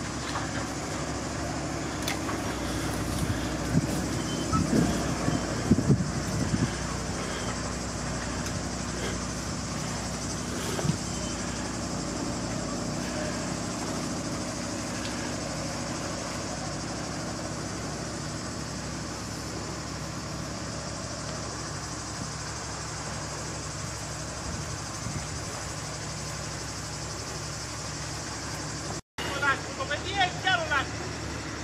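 Engine of a farm crop-sprayer rig running steadily while it pumps water onto a scrub fire. Brief voices call out a few seconds in.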